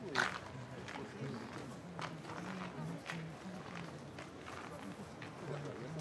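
Slow, deliberate footfalls on stone paving, about one a second, from a robed performer doing the ritual walk of a Shinto hikime bow rite. A low murmur of onlookers' voices runs underneath.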